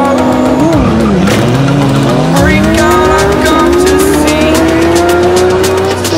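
Two V12 supercars, a Lamborghini Aventador SVJ and a Ferrari LaFerrari, launching from a standstill in a drag race with tyre squeal. About a second in, the engine note dips, then rises as they accelerate hard, drops at an upshift about three and a half seconds in, and rises again. Background music plays underneath.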